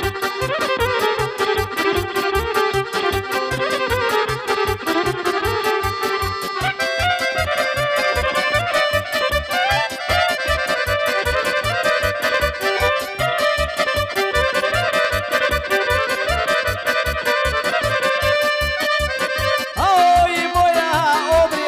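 Instrumental break of a Balkan folk song: electric violin and a keyboard with an accordion-like sound play the melody over a steady bass beat, and the melody moves up to a higher register about seven seconds in.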